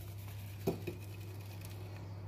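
Flour being sifted through a wooden-rimmed mesh sieve into a glass bowl: a soft patter, with two light taps a little under a second in.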